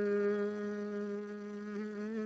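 One voice holding a long sung note at the end of a phrase of a Vietnamese song, steady with a slight wavering near the end.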